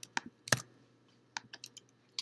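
Computer keyboard keys being pressed: a few separate sharp clicks, the loudest about half a second in, then a quick run of lighter taps near the end.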